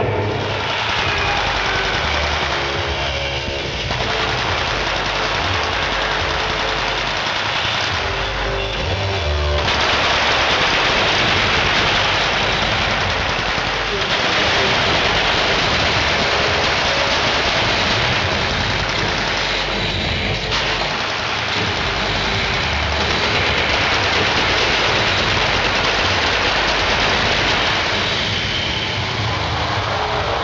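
Live stunt-show battle: rapid machine-gun fire from prop guns and bursts from pyrotechnic fire jets, over loud show music on loudspeakers. The noise thickens into a dense, continuous wash about ten seconds in.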